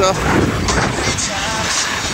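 Steady rushing noise of sliding fast down a packed-snow slope: wind buffeting the microphone over the scrape of snow underfoot.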